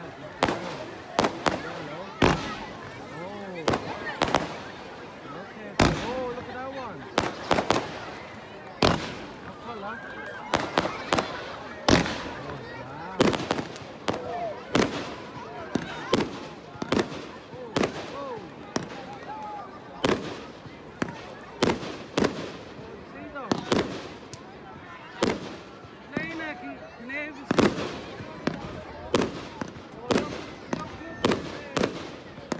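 Fireworks display: a long irregular run of sharp bangs and crackles, at times several a second, with people's voices chattering between the bursts.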